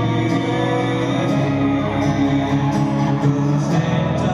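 Live acoustic country music: a strummed acoustic guitar with a slide guitar played flat on the lap, holding sustained notes.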